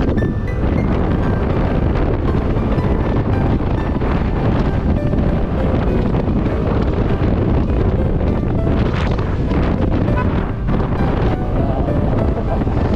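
Steady wind noise buffeting the microphone on a moving motorcycle, with background music underneath.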